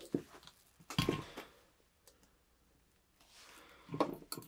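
A few faint, short handling clicks and rustles in the first second and a half, the largest just after one second, then near silence: room tone.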